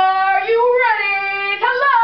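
A performer sounds a loud, buzzy tune through hands cupped at her mouth like a horn: long held notes that step up and back down, with a short break and slide about one and a half seconds in.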